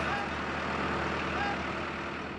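Steady low drone of a tractor engine towing a car out of a muddy pond on a chain, with water churning around the car.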